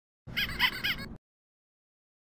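A short sound effect on the closing logo: three quick chirps, each rising then falling in pitch, over a low rumble, cutting off suddenly after about a second.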